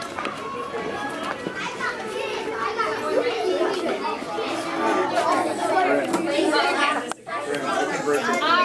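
Many children talking and playing at once, a mix of overlapping voices and chatter that grows louder over the first few seconds.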